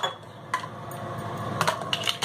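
A few light clicks of a spoon against a steel mixing bowl, one about half a second in and a small cluster near the end, over a faint steady low hum.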